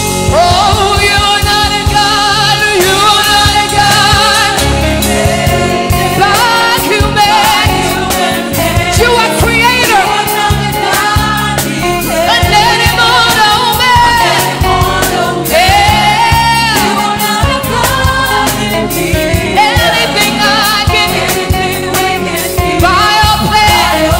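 Live gospel worship song: a woman sings the lead line into a handheld microphone, with backing singers and a band behind her.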